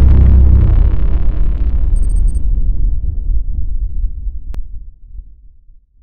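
Logo-sting sound effect: a deep boom that rumbles and dies away over about five seconds. A brief high glint comes about two seconds in, and a faint click near the end.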